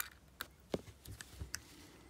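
A few faint, irregular small clicks of a new Renata 371 button cell being pressed and settled into a Ronda quartz watch movement with fingers and tweezers: metal tapping lightly on metal.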